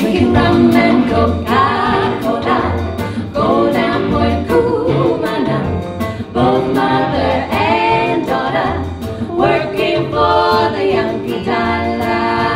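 Three women singing a 1940s song in close harmony with a live big band, over the drum kit's steady beat and bass.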